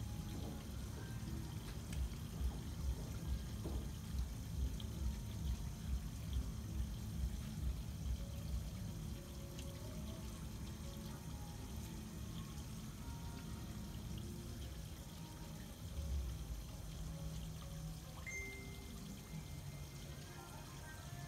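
Steady trickling water under a low rhythmic thump of about two beats a second, which fades out some eight seconds in. A short steady high tone sounds near the end.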